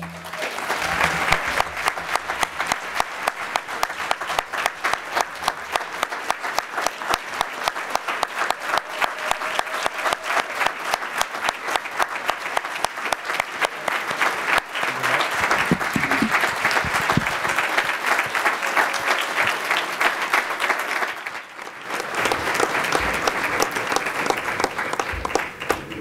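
A large audience applauding in a long, steady ovation. The clapping dips briefly near the end, then picks up again.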